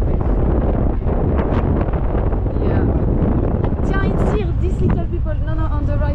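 Wind rushing over the microphone on a moving motor scooter, a dense low rumble throughout, with voices talking over it from about four seconds in.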